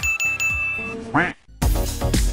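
Edited sound effects: a quick run of bright, high dings, about five a second, then a short comic sound effect that swoops in pitch. Upbeat dance music comes in loudly near the end.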